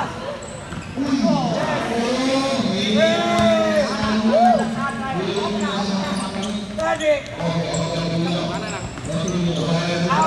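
Futsal ball kicked and bouncing on a hard indoor court, echoing in a large hall, with a sharp knock about seven seconds in. Players and spectators shout throughout.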